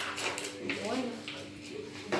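Faint voices in a small room, with light rustling of a paper sheet being handled.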